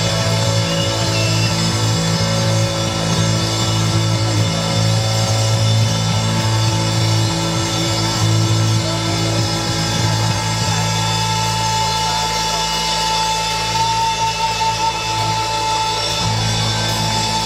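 Rock band playing live: electric bass, drum kit and electric guitar, with long held notes.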